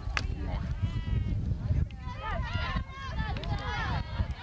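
Several voices shouting and calling out at once, overlapping, over a steady low rumble, with a sharp click near the start.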